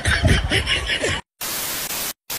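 Voices for about the first second, a brief cut to silence, then a steady burst of TV-style static hiss used as an editing transition.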